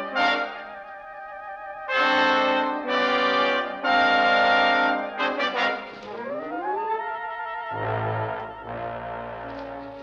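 Dramatic orchestral underscore led by brass: two loud held brass chords, then a rising swoop into quieter low sustained notes.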